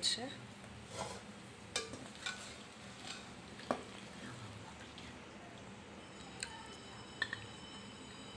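A spoon stirring and scraping crumbled bread and vegetables in a metal pan, with scattered light knocks of the spoon against the pan over a faint sizzle.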